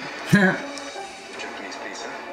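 A man's short, loud burst of laughter, over the TV show's soundtrack of background music and speech.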